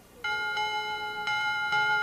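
A bell struck a few times, its clear tone ringing on between the strikes, starting about a quarter second in.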